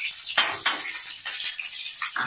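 Chopped garlic tipped into hot mustard oil in a metal kadhai, sizzling. There is a sharp knock about half a second in, followed by a few lighter knocks.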